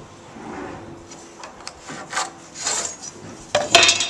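Pencil scratching along a steel carpenter's square on a laminated-wood stair stringer as layout lines are drawn: several short strokes, then a few sharp clacks of the metal square against the board near the end.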